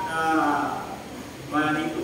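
A man's preaching voice with drawn-out, sliding vowels and a short lull about a second in, before speech picks up again near the end.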